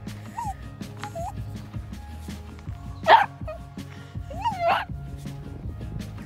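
A small dog, the miniature dachshund, gives four short yips and barks over background music, the loudest and harshest about three seconds in.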